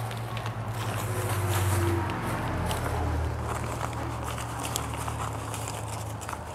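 Light rustling and crackle of leafy cuttings and newspaper being handled and laid down, over a steady low hum that swells for a while about two seconds in.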